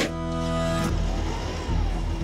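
Tractor engine running with a steady hum. About a second in, a louder rushing noise takes over as the power-take-off-driven rotary mower is engaged.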